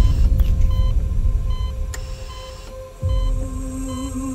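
Hospital patient monitor beeping at a steady pace under a low rumbling drone, with a sudden deep boom at the start and another about three seconds in.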